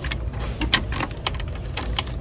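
Plastic NYX Butter Gloss tubes clicking and clacking against each other and the plastic display tray as they are picked through: a quick, irregular run of sharp clicks over a low steady hum.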